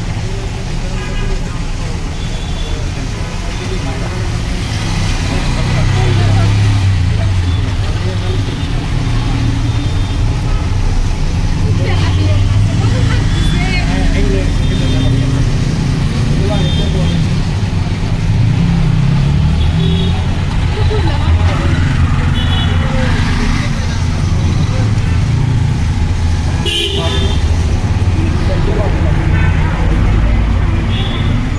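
Steady low rumble of background noise with indistinct voices and brief high-pitched toots every few seconds.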